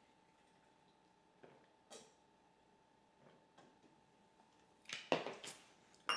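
Faint swallowing while drinking from a plastic shaker bottle, then a short burst of knocks and clatter about five seconds in as the bottle is put down.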